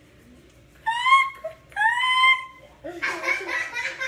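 Two short, high-pitched rising whines about one and two seconds in, then a woman laughing near the end.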